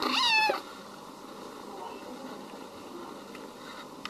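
A kitten gives one short, loud, high-pitched meow lasting about half a second, its pitch dipping at the end.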